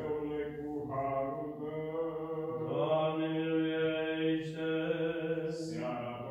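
Orthodox liturgical chant by a male voice, drawn-out notes held on long vowels. The melody steps to a new pitch about a second in and rises again near the middle, over a steady low note.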